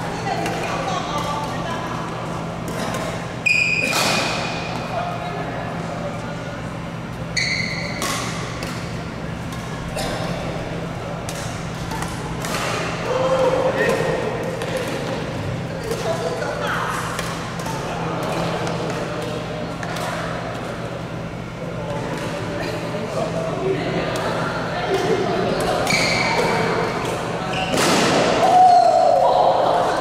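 Badminton doubles rally in a large hall: repeated sharp racket strikes on the shuttlecock, with a few short shoe squeaks on the court floor, over a steady low hum and background voices.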